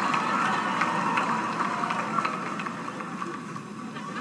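A theatre audience laughing and applauding after a punchline, a dense crackling wash of crowd noise that dies down over the few seconds.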